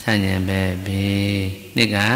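A Buddhist monk's low male voice chanting in long, level-pitched notes: one phrase held for about a second and a half, a brief break, then another note starting near the end.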